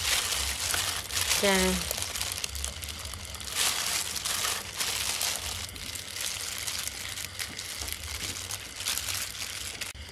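Plastic glove crinkling and rubbing as a hand squeezes and mixes sliced raw beef, an irregular crackling that goes on throughout.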